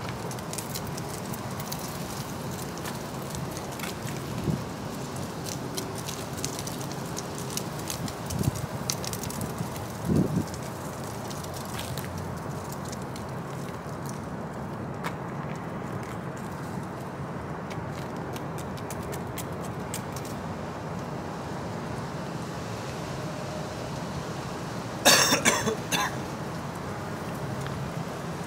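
Steady low outdoor background noise with a few short soft thumps, and a loud, short noisy burst near the end.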